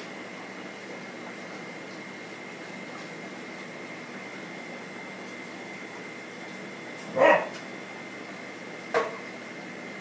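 Steady hum and hiss of reef-tank equipment with a faint high whine, broken by two short loud sounds about seven and nine seconds in, the first the louder.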